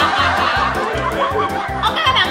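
Several people laughing and snickering over background music with a steady beat.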